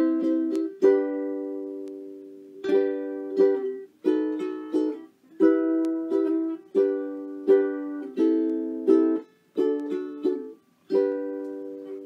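Ukulele strumming single chords one at a time, each let ring and die away, ending on a final chord that rings out and fades near the end.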